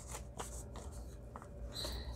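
Faint rustling and light taps of a stack of paper pages and an envelope being handled and slid into place under a sewing machine's presser foot.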